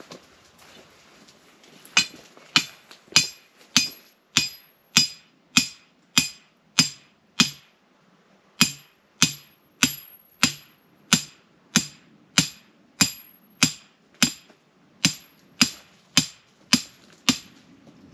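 Steady hammer blows on metal with a ringing note, a little under two a second, some two dozen in all, with a short break a third of the way through.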